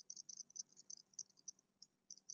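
Near silence: faint room tone with irregular, high-pitched little chirps.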